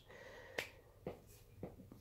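Near-silent room tone with three faint short clicks, about half a second, one second and one and a half seconds in.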